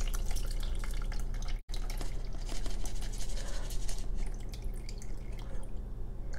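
Dirty rinse water dripping and trickling through a small mesh strainer into a plastic tub as soaked black rice is drained, with many small irregular drips. The sound drops out for an instant about a second and a half in.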